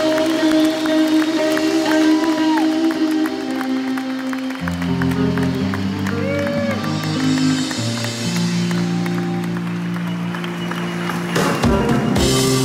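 Live band playing a slow walk-on instrumental of held chords, the bass notes changing about halfway through, under steady audience applause with a few whistles and whoops. A loud crash near the end.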